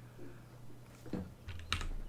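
A few quiet computer keyboard key presses, about a second in and again near the end, over a faint steady low hum.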